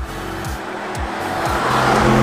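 Audi RS6 Avant Performance's 4.0-litre twin-turbo V8 and tyres as the car drives through a bend toward the listener, growing louder toward the end as it passes close. A steady music beat runs underneath.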